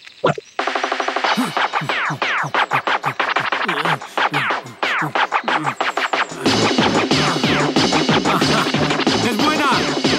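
Electronic dance music played from a DJ turntable, with quick falling record-scratch sweeps. A steady beat with heavy bass comes in about six and a half seconds in.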